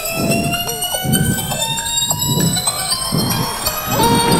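Rewind sound effect over the stage PA, imitating a tape being rewound: a pitched tone that slowly rises in pitch with short jumps, over a pulsing low beat about twice a second.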